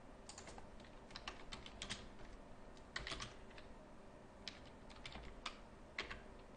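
Typing on a computer keyboard: faint keystrokes in short, irregular runs with pauses between them.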